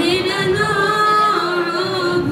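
Syriac church choir of girls and young women singing long held notes, the melody moving to a new note a little over halfway through.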